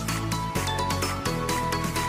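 Background music: sustained bass notes that change every half second or so, under a run of light, evenly spaced percussive strikes.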